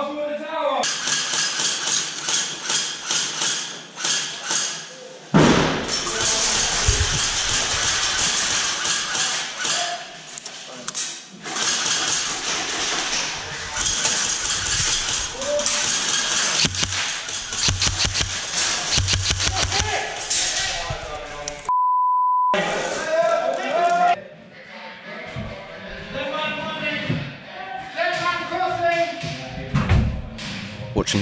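Airsoft guns firing in rapid runs of sharp clicks inside a large building, with players shouting. About 22 seconds in, a short steady censor bleep cuts in.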